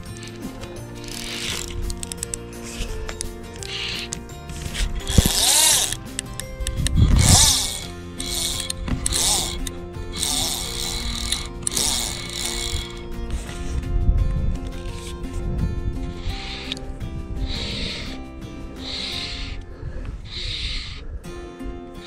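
Fly reel's click-and-pawl drag ratcheting in short bursts, about one a second, while a hooked fish is played on a bent fly rod. Steady background music plays underneath.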